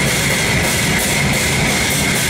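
Heavy metal band playing live, loud: electric guitar, bass and drum kit, with cymbal strokes at a steady pace of about three a second.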